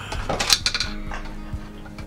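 A checker dropped into a wooden Connect Four board, clattering down through the column in a quick run of clicks about half a second in.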